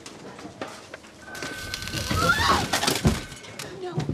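A crash and clatter of office things being knocked over, about a second in, with a high, rising cry partway through: a person falling and yelping.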